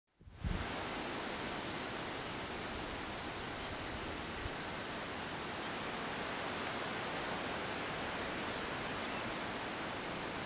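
Steady wind noise over a forested hillside, with a brief low bump from the wind on the microphone as the sound begins. A faint high buzz comes and goes above it.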